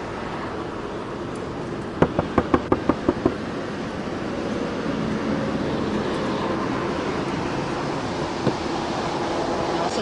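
Steady rumble of idling vehicles and road noise, growing slightly louder in the second half. About two seconds in there is a quick run of about eight sharp clicks.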